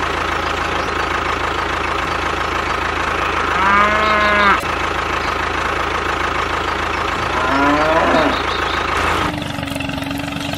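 A steady tractor engine running, with a cow mooing twice over it: one moo about four seconds in and a second, rising in pitch, near eight seconds. The engine sound changes and thins out near the end.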